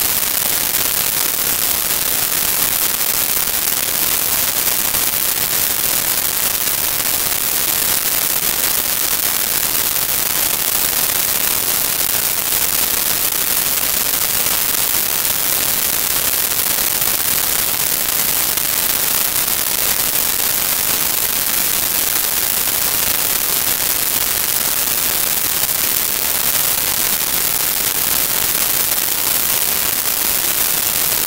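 Steady, loud static hiss, strongest in the treble and unchanging throughout, covering any other sound.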